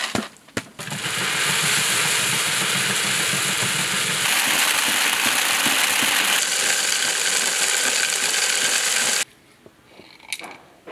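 Dried soybeans pouring through a wooden hand-cranked winnowing machine and pattering into a bamboo basket, with the machine's fan running: a dense, steady rattle after a few knocks at the start, cutting off suddenly near the end.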